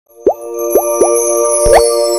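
Animated logo intro sting: three quick cartoon pops that slide upward in pitch, then a bigger rising swoop, over a held bright synth chord.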